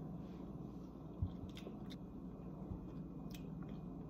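Faint mouth sounds of eating a spoonful of runny, gloopy homemade edible cookie dough, with a few soft clicks, over a low steady room hum.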